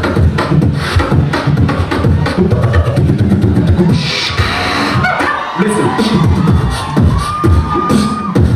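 Live beatboxing into a handheld microphone: a fast run of vocal kick and snare sounds, with a hissing burst about halfway through and a held, whistle-like tone near the end.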